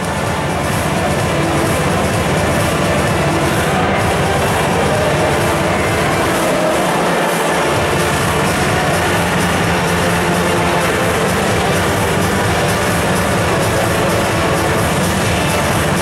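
Music playing loudly over an arena's sound system, dense and steady.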